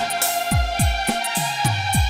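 Instrumental stretch of a Bollywood song played in timli band style: a held melody line over a steady beat of deep drum hits that drop in pitch, with regular cymbal strokes.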